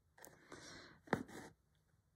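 Embroidery thread drawn through cotton fabric with a soft rasp, and a single sharp pop about a second in as the needle goes through: the sign of a needle too small for the thread it drags.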